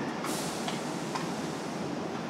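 Steady background noise, with a brief hiss about a quarter of a second in.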